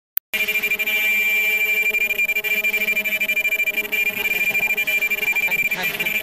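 Non-woven bag bottom ultrasonic welding machine running, giving off a loud, steady high-pitched whine that holds unchanged.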